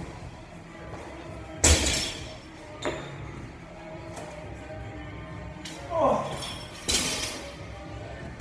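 A 20-pound medicine ball hitting a wall during wall-ball throws: two loud thuds about five seconds apart, the first followed about a second later by a softer thud as the ball is caught. A short vocal sound comes just before the second hit, over background music.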